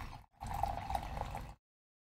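Coffee poured from a French press into a mug, a steady stream of liquid filling the cup that cuts off abruptly about a second and a half in.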